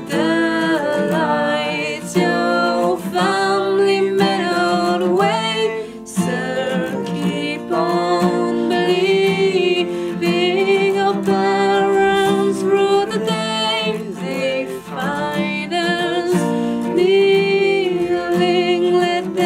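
A man and a woman singing together over a strummed acoustic guitar, with long held notes.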